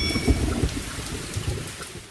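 Intro sound effect of rumbling, crackling noise, much like distant thunder and rain, slowly fading away.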